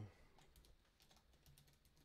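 Faint typing on a computer keyboard: a quick, uneven run of light keystrokes.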